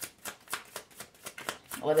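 A deck of tarot cards shuffled by hand, a quick steady run of soft card slaps, about six a second.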